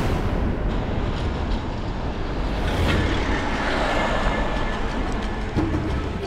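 A car driving: a steady rumble of engine and road noise that swells briefly about three seconds in.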